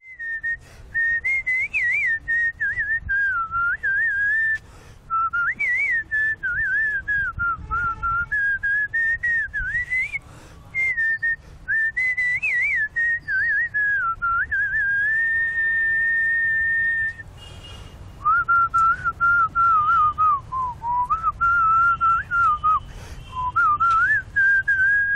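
A man whistling a tune through pursed lips: a single clear, high melody line that wavers and glides from note to note in phrases. About two-thirds of the way in he holds one long steady note, breaks off briefly, then goes on with a lower phrase.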